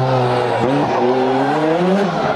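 A car engine running, its pitch sinking slightly and then rising again near the end, as the revs drop and climb.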